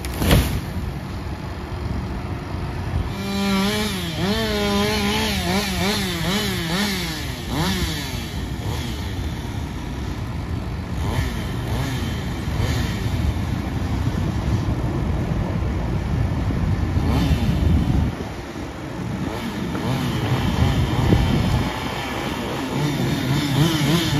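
A felled birch hits the ground with a crash about half a second in. Then a chainsaw revs up and down repeatedly for several seconds, over the steady running of a forestry tractor's diesel engine.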